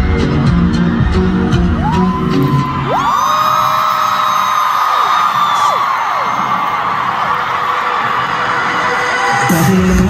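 Live K-pop concert music with a heavy beat plays through an arena PA, then breaks off about three seconds in. A crowd of fans fills the pause with long, high screams and cheers until the music kicks back in near the end.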